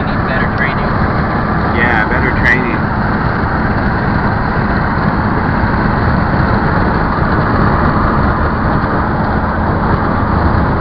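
Steady road and wind noise heard from inside a vehicle cruising at highway speed.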